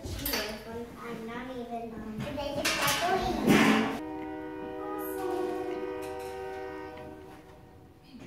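Children's voices chattering and calling out, with a loud shout about three and a half seconds in. Then a steady held musical tone with even overtones comes in suddenly and fades away over about three seconds.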